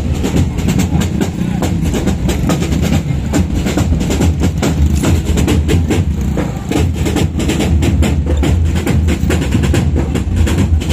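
Marching band playing on the move: drums beating in a fast, dense stream of strokes over a steady low bass-drum thump.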